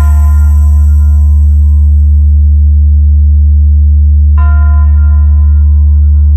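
A loud, steady deep bass drone from a DJ sound-check bass-test track. A bell-like chime rings away over the first seconds, and another is struck about four and a half seconds in and rings out over the drone.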